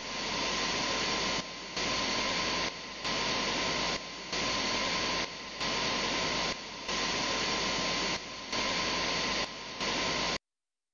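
Television static hiss: a steady rush of noise with a faint steady tone running through it, dipping briefly in level about every 1.3 seconds.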